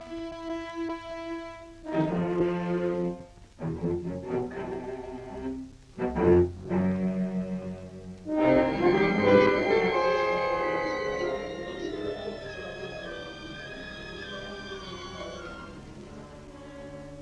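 Orchestral film score led by bowed strings: held notes in short, broken phrases, then about eight seconds in a fuller sustained passage that slowly grows quieter.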